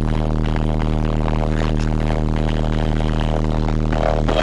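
A deep, steady bass note held from a car audio competition system's wall of subwoofers, heard from inside the cabin at very high level, distorted and buzzing.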